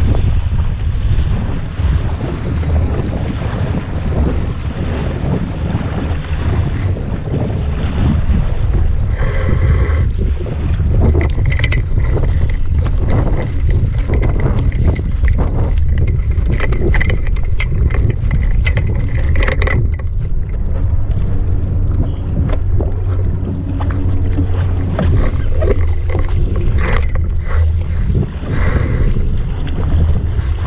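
Steady, heavy wind noise on the microphone, a low rumble, over water rushing and splashing along the hull of a small sailing dinghy under way.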